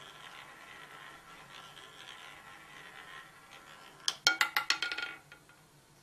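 A roulette ball running around a spinning roulette wheel with a faint, steady rolling sound. About four seconds in comes a rapid, loud clatter of sharp clicks lasting about a second as the ball drops, bounces across the pocket separators and settles in a pocket.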